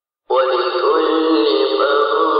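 Sung melody, thin-sounding with no bass, cutting in abruptly from dead silence about a third of a second in and carrying on steadily.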